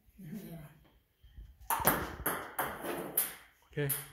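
Table tennis serves: a plastic ball struck by a Stiga Bullet racket and bouncing on the table. The sharp clicks start about halfway in and come in quick succession, a few each second.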